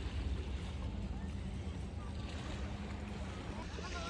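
Wind buffeting the microphone in a steady low rumble, over the soft wash of small waves on a sandy shore, with faint distant voices.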